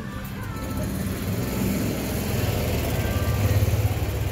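A golf-cart-like utility vehicle driving close by, its low rumble growing louder toward the end.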